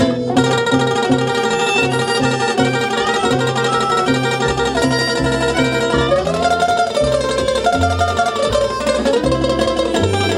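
Live acoustic trio playing an instrumental: harmonica carrying the melody over a strummed ukulele and a plucked upright bass line that changes note on the beat.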